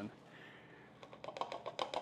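Flexible plastic cutting board being bent and handled while grated Parmesan slides off it into a bowl. From about halfway in there is a quick run of light clicks and ticks.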